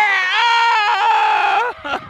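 A high-pitched voice letting out one long excited squeal as the pins go down, held steady for nearly two seconds and cutting off shortly before the end.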